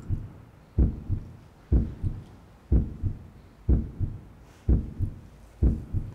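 Heartbeat sound effect: a low double thump, lub-dub, repeating steadily about once a second, six beats in all.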